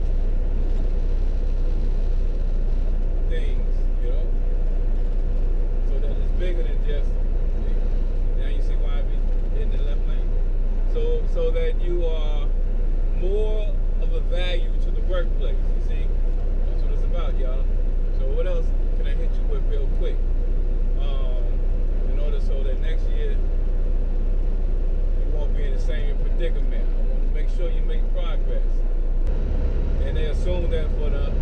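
Steady low rumble of engine and road noise inside a semi-truck's cab cruising at highway speed. A faint voice is heard in the background at times, mostly around the middle.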